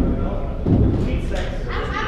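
Two dull, low thumps, one at the start and a heavier one about two-thirds of a second in, from a stage monitor speaker and its cables being handled, over a steady low hum. Voices come in near the end.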